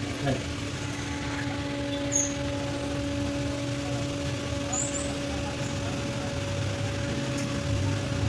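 Steady mechanical hum over a low rumble, with two faint high chirps about two and five seconds in.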